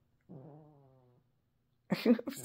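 A puppy's short, low, drawn-out groan lasting under a second and fading away, a sleepy vocal noise as it wakes.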